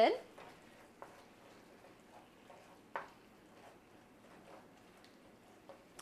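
Faint sizzle of fresh spinach wilting in a hot nonstick frying pan as it is stirred with a spatula, with a light click of the spatula against the pan about three seconds in.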